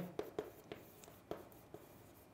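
Chalk writing on a chalkboard: faint, irregular short taps and scratches as the strokes are written.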